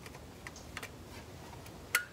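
Plastic wiring-harness connector being pushed onto the vehicle speed sensor in a truck's transfer case: a few faint handling clicks, then one sharper click near the end as the connector latches into place.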